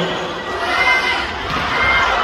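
Crowd in an indoor sports arena cheering and shouting, many voices at once.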